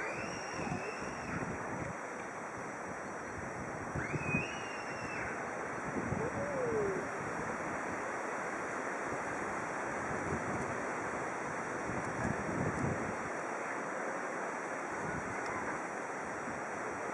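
Wind blowing over a compact camera's built-in microphone: a steady rushing hiss with small gusts. A couple of brief high calls cut through it, one at the start and one about four seconds in.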